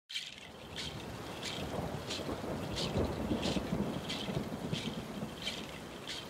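A low, thunder-like rumble that swells towards the middle, under a steady high tick repeating about three times every two seconds.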